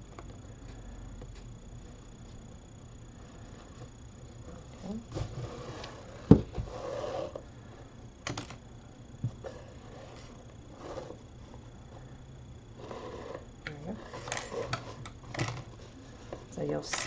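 Hands working a fabric-lined paper cone while hand-sewing, giving soft rustles of napkin and paper and the thread being drawn through and pulled. There is one sharp knock about six seconds in.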